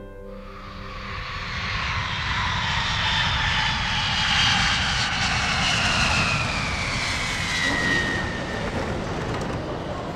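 Jet airliner's engines on landing approach: a loud roar that builds over the first couple of seconds, with a high whine that slowly falls in pitch through the middle of the clip.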